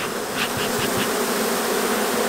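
A colony of honeybees buzzing in a steady hum around an opened hive, with a few short hissing puffs from a bee smoker in the first second.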